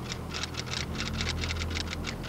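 Typewriter clacking in a rapid run of keystrokes, about eight a second, over a steady low hum.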